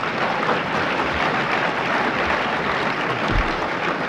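An audience applauding, a steady, even clatter of many hands clapping.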